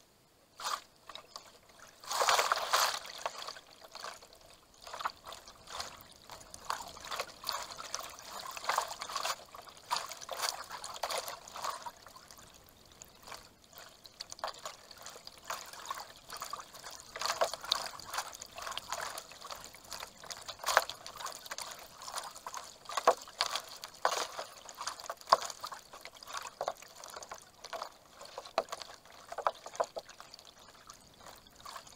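Kayak paddle strokes splashing, with water trickling and lapping close to the microphone, sped up threefold so the splashes come quick and irregular. A louder splash comes about two seconds in.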